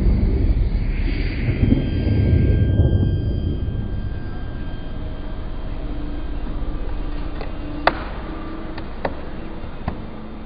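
Cirrus Vision SF50 personal-jet prototype's single Williams FJ33 turbofan rumbling loudly as the jet passes close, fading away over the first few seconds. After that a steadier, quieter low hum with a few sharp clicks near the end.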